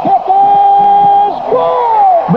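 A man's voice shouting: one long, high held note for about a second, then a second shout that falls in pitch.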